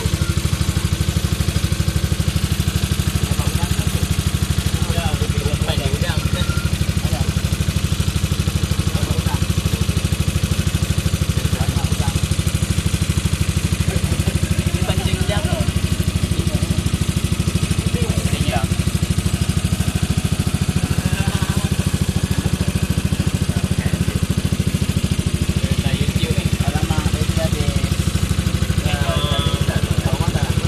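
Small outboard motor of a wooden river ferry boat running steadily under way, a constant low drone, with faint voices now and then over it.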